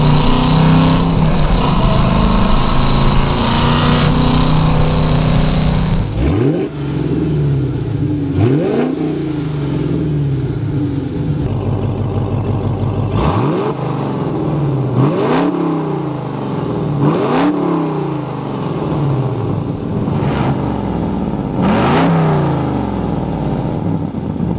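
Supercharged 6.2-litre Hemi V8 of a Dodge Challenger Hellcat with headers and its exhaust cutouts open: a steady loud run at constant engine speed, then from about six seconds in about seven sharp revs, each rising and dropping back, roughly every two seconds.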